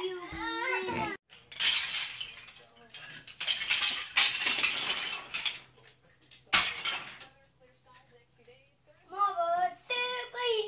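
Plastic Lego Duplo blocks clattering and rattling in two long bursts as children rummage through a pile of them, with one sharp clack past the middle.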